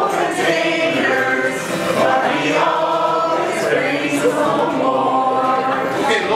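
A small group of voices singing a song together, accompanied by a strummed acoustic guitar.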